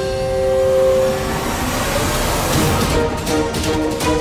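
Dramatic background score: two held notes fade out in the first second and a half over a low rumble, then a rhythmic beat with new notes comes in about two and a half seconds in.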